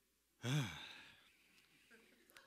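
A man's sigh into a microphone: one short voiced breath out that falls in pitch, echoing briefly in the hall.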